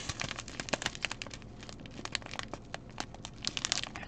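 Clear plastic bags of rhinestones crinkling as they are handled, a run of small crackles that grows busier near the end.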